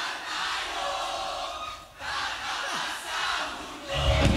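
Concert crowd cheering and shouting in a break in the music, in swells with a short dip about halfway through. The band comes back in at the very end.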